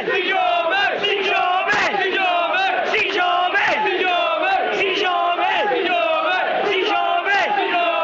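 Football supporters singing a chant together, many voices loud and close to the microphone.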